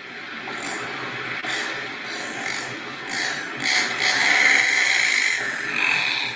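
Recorded seabird call played back: a harsh, growling call with no clear pitch that goes on without a break and grows louder about four seconds in.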